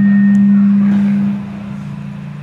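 A steady low hum on one pitch through the microphone and loudspeaker system, loud for about a second and a half and then dropping to a quieter hum.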